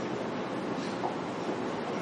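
Steady room noise, an even hiss, with a faint short sound about a second in.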